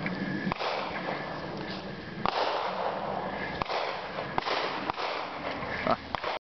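Handling noise on a hand-held camera's microphone: an uneven rustling hiss with several short, sharp clicks as the camera is moved about.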